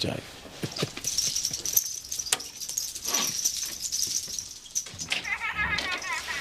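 A dog whining in short, high, wavering notes near the end, over a steady high hiss with a few clicks.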